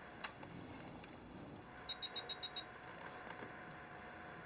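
Quiet room tone with a faint click, then, about two seconds in, a quick even run of six short high-pitched ticks from the laptop being used.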